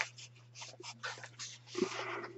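Paper pages of a small paperback book rustling and crinkling as a page is turned by hand: a string of soft, quick rustles, with a longer, louder rustle near the end.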